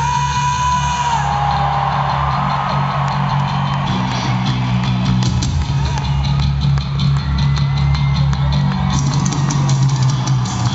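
Live rock band playing loud in an arena, heard from the crowd: drum kit and electric guitars, with a held lead note that bends at the start and steady drum hits through the rest.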